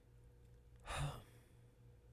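A man's exasperated sigh: one short breath out about a second in, after he breaks off mid-sentence.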